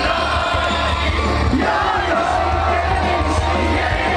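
Loud live electronic rock band playing through a big outdoor PA, picked up by a phone mic inside the crowd, with heavy, steady bass. Crowd voices shout and sing along over the music.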